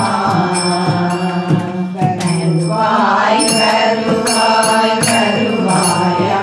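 A group of voices singing a devotional chant together, with hand clapping and a bright ringing percussion beating time about twice a second.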